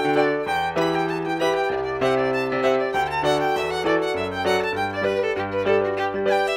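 Solo fiddle (violin) playing a traditional tune: a quick run of bowed notes changing several times a second, over an accompaniment of held low bass notes below the fiddle's range.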